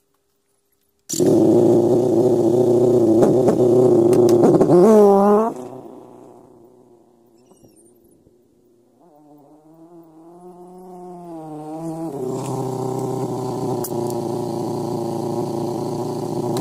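Yamaha motorcycle engine with an aftermarket silencer, starting abruptly about a second in and running, with a rise in pitch about five seconds in before it drops away. It returns at a lower level, wavering in pitch, then settles to a steady idle.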